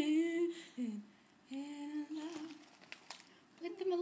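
A woman humming a few held notes, the first wavering and ending about half a second in, then a steady one, and another starting near the end, with short quiet gaps between.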